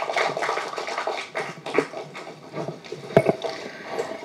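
Audience applauding, a dense crackle of hand claps that tails off, with faint voices underneath and a single sharp knock about three seconds in.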